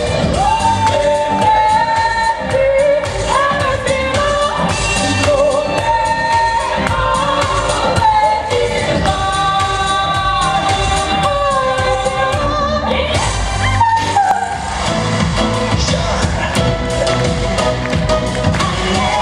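A woman singing a song into a handheld microphone over backing music, amplified through the PA, with long held notes and slides between them.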